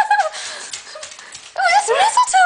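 A dog whining close to the microphone in high, wavering cries: one trails off just after the start, and another rises near the end.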